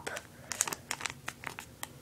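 A sheet of origami paper crinkling and crackling as it is folded and pressed by hand, in irregular short crackles.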